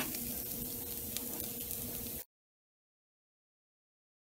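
Potato pancakes sizzling in butter in a skillet, a steady frying hiss that cuts off suddenly a little over two seconds in.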